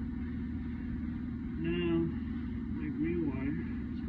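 Steady low mechanical hum of plant-room machinery. A short held voice sound comes about two seconds in, with brief voice fragments a little after three seconds.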